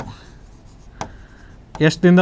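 Marker pen writing on a board: faint scratching strokes with a single light tap about a second in.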